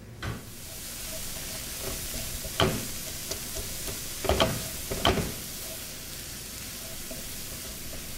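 Ground beef sizzling as it browns in a nonstick frying pan while a silicone spatula stirs it. Three louder knocks of the spatula against the pan come about two and a half, four and five seconds in.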